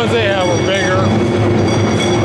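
Taiko drums played in a fast, continuous run of strokes, with a voice calling out, rising and falling in pitch, during the first second.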